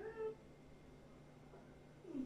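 A short high-pitched call, like a cat's meow, rising and then held for about a third of a second at the very start. Then only quiet room tone.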